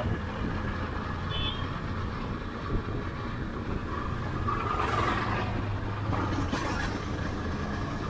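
Single-cylinder KTM 250 Duke motorcycle cruising slowly, its engine running steadily under wind and road noise. The noise swells briefly about five seconds in as an oncoming tractor with a trailer goes past.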